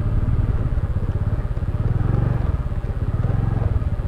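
Honda scooter's single-cylinder engine running at low riding speed, a steady fast-pulsing note that swells slightly about halfway through.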